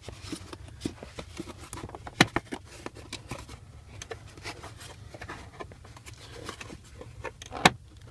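Styrofoam floor filler being worked loose and pulled out by hand: scattered scrapes, creaks and small knocks, with two sharp knocks about two seconds in and near the end.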